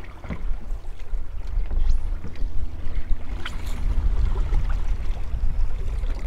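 Steady low rumble of wind buffeting the microphone on an open boat on the river, with a faint hum underneath.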